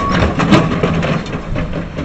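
A John Deere 200C LC excavator crashing over onto its side off a trailer: one heavy impact about half a second in, then a low rumbling noise as the dust settles.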